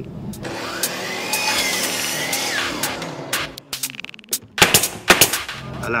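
Nail gun firing nails into wooden wall boards: a quick irregular run of sharp shots in the second half, the two loudest near the end. Before the shots comes a steady hissing whir.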